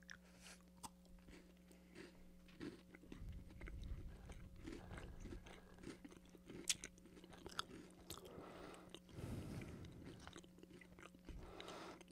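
Faint close-up chewing and crunching of Kit Kat chocolate wafer fingers, with small crisp clicks of the wafer breaking, picking up from about three seconds in.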